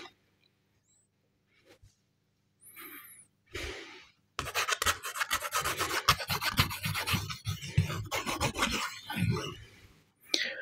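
Pen scribbling on a sheet of paper held close to the microphone: after a quiet start, a rapid run of scratchy strokes begins about four seconds in and lasts about five seconds.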